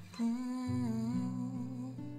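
A woman's soft singing voice holding a drawn-out note that bends up and down, over a ringing acoustic guitar chord, with a low guitar note coming in just under a second in.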